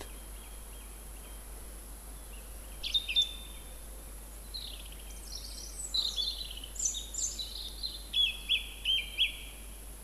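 Song thrush singing: from about three seconds in, a series of short high phrases, ending with a brief figure repeated about four times over, the species' habit of repeating each little phrase of two or three notes.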